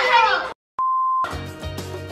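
Voices cut off, and after a brief silence a single steady beep, an edited-in sound effect lasting about half a second, sounds. Background music with a bass line starts straight after it.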